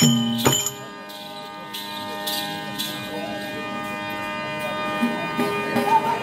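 Therukoothu accompaniment: the last drum strokes with jingling cymbals end about half a second in, leaving a steady held drone from the accompanying instruments. A faint high jingle comes and goes over the drone, and a voice comes in near the end.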